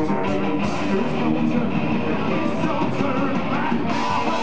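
Melodic power metal band playing live: distorted electric guitars and acoustic drums, with a singer's voice over them.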